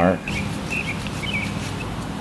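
Steady low room hum, with a few faint, short high-pitched chirps in the first second and a half.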